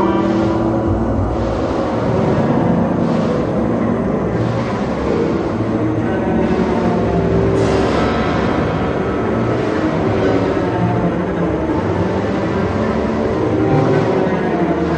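Electroacoustic concert music for tape and chamber ensemble: a loud, dense noisy mass heavy in the low end, with a few held low tones sounding through it.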